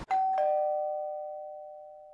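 Doorbell chime ringing a two-note ding-dong: a higher note, then a lower one a quarter-second later, both ringing on and slowly fading away.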